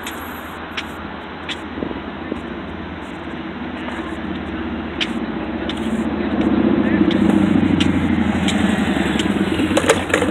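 A motor vehicle's engine approaching and growing louder through the second half, over a steady background of outdoor noise.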